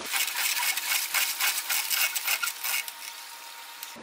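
Sped-up sound of a homemade pipe solar-blanket reel being cranked: a fast, dense run of clicks and rubbing from the turning pipe and the plastic bubble blanket winding onto it, fading near the end.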